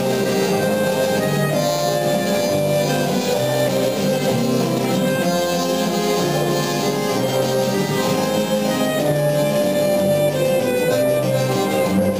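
Live folk band playing an instrumental passage: accordion holding the melody in long sustained notes over a repeating bass line, with acoustic guitars accompanying.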